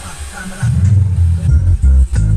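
Music played loud through a high-bass sound system of two 12-inch subwoofers and Sony 6x9 oval speakers. Heavy, deep bass comes in about half a second in and dominates the sound.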